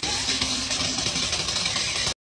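Kitchen tap running steadily, a stream of water splashing into the sink basin.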